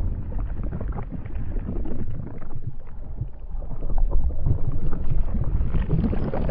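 Logo-intro sound effect: a deep, steady rumble with scattered small crackles under it, sitting between two sharp hits.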